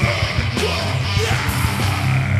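Heavy metal band playing live: distorted guitars, bass and drums, with a screamed vocal.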